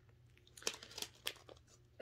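Faint crinkling of a small sealed plastic sample pouch of wax melts being handled. A handful of short, irregular crackles start about half a second in.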